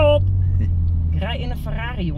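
Ferrari engine and drivetrain giving a steady low drone, heard from inside the cabin while the car is being driven.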